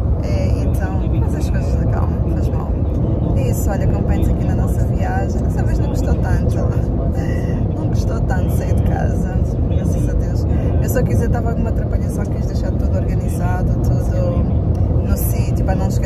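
Steady low road rumble inside a car's cabin as it drives at motorway speed, with a woman talking over it throughout.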